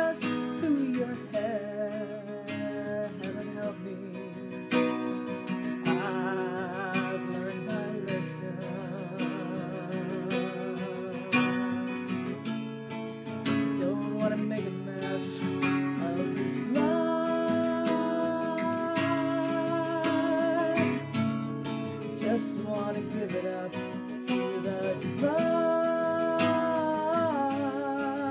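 Acoustic guitar strummed in steady chords, with a woman's voice singing a melody over it, holding notes with vibrato.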